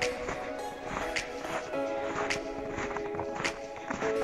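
Background music with sustained chords and a light beat striking a little over once a second.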